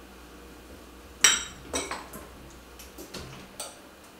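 Kitchenware clinking against a stainless steel frying pan as spices are tipped in from a small bowl and stirred with a spatula: one sharp ringing clink a little over a second in, then several lighter clicks.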